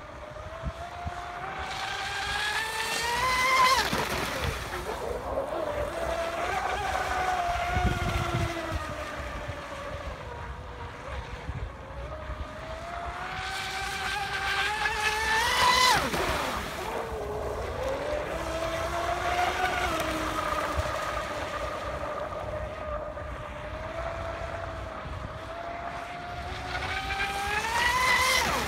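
Pro Boat Blackjack 29 RC catamaran's brushless electric motor whining at speed on a 6S LiPo. Three times the whine climbs in pitch and loudness to a peak and then drops away sharply as the boat passes close.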